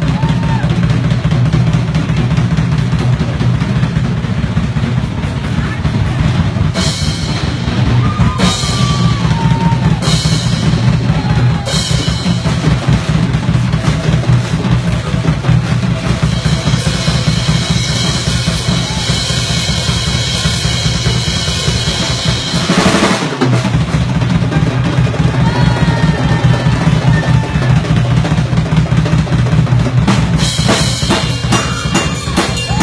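Live drum kit playing a fast, unbroken bass-drum pattern, with four cymbal crashes around a quarter of the way in and a longer cymbal wash later. The pattern breaks off for a moment a little past three-quarters of the way through.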